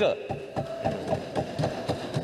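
Desk-thumping by members of parliament: many rapid, irregular knocks of hands on wooden desks, a show of approval for the speech just ended.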